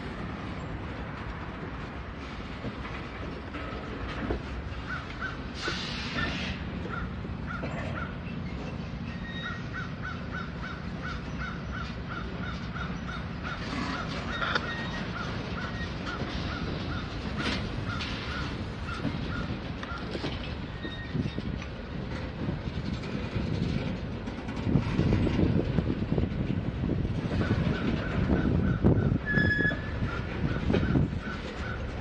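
Loaded ballast hopper cars of a rock train rolling past, with steady wheel rumble. A short high squeak repeats about three times a second. The rumble grows louder and rougher near the end.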